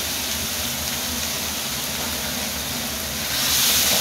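Chilli, garlic and shallot spice paste sizzling steadily in hot oil in an aluminium wok. The sizzle grows louder near the end as the paste is stirred with a metal spatula.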